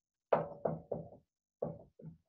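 Dry-erase marker writing on a whiteboard: a quick series of about six short taps and scrapes as the letters are stroked on.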